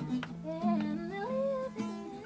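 Acoustic guitar playing sustained low notes while a voice hums a melody that glides up and down over it.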